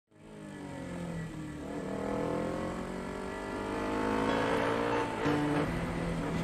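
Motorcycle engine fading in and running, its pitch rising slowly as it speeds up, then holding steady near the end.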